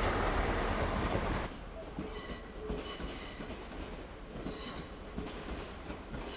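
A ScotRail passenger train running past close by, a loud steady rumble that cuts off abruptly about a second and a half in. After that, a train's wheels squeal on the rails in several short high-pitched bursts over a quieter rumble.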